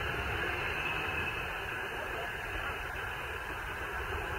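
Cars driving slowly past close by: a steady, muffled rush of engine and road noise with no distinct strokes.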